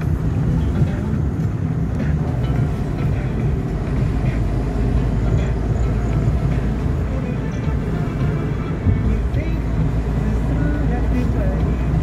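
Steady low road and engine rumble heard inside a moving car's cabin, with a car radio playing faintly underneath.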